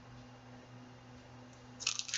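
Quiet room tone with a faint steady electrical hum; near the end, a short rustle as the plastic-cased display is moved.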